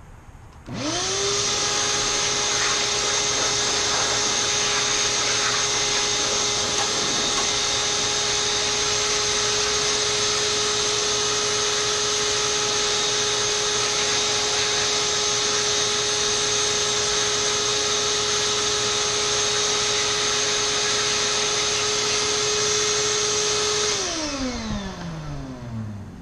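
Wet/dry shop vacuum switched on about a second in, its motor quickly rising to a steady whine and running evenly, then switched off near the end, the pitch falling as the motor spins down.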